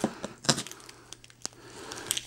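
Paper shipping label being torn and crumpled by hand: irregular small crackles and tearing, with a couple of sharper clicks.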